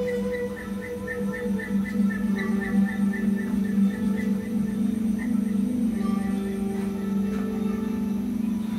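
Calm ambient background music: a sustained low drone, with a quick run of short, high repeated notes over it during the first half.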